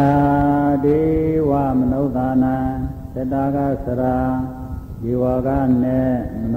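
A Theravada Buddhist monk chanting Pali verses in a slow, melodic recitation: a string of short phrases, each on long held notes that step up and down in pitch, with brief breaths between them.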